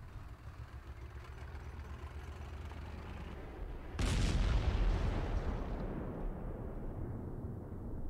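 Soundtrack war effects: a low rumble, then about four seconds in a loud explosion boom that dies away slowly over the following seconds.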